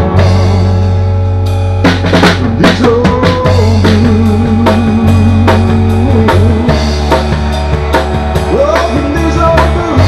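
Live country band playing an instrumental passage without vocals: drum kit with cymbals, snare and kick, over sustained low notes and an electric guitar line.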